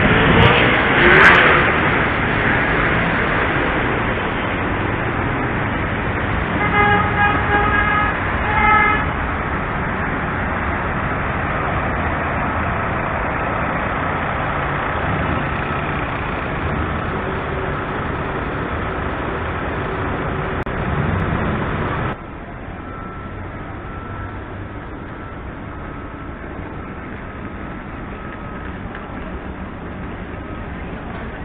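City street traffic noise with a car horn honking twice, a long honk about seven seconds in and a short one a second later. The traffic noise drops suddenly in level about two-thirds of the way through.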